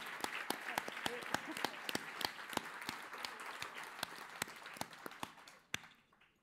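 Audience applauding, many hands clapping, thinning out and stopping just before the end with one last clap.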